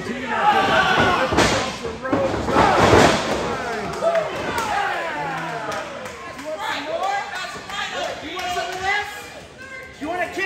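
Shouting voices from a live crowd, with heavy thuds of wrestlers hitting the ring canvas. The loudest thud comes about three seconds in, and another about a second and a half in.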